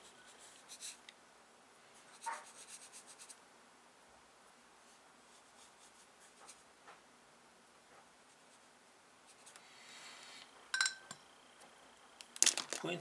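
Water-based felt-tip sign pen colouring on drawing paper: faint strokes and light ticks in short runs, with a sharper click near the end.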